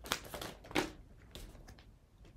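Tarot cards being shuffled and handled by hand: two sharper card slaps in the first second, then a few lighter flicks and rustles of the deck.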